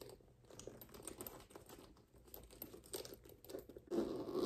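Faint, irregular clicking and rustling of hands working a stiff zipper on a new crossbody bag, struggling to pull it closed.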